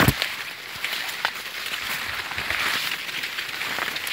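Maize leaves rustling and brushing against the person and the camera as someone walks between the corn rows, with scattered crackles and footsteps. A thump right at the start.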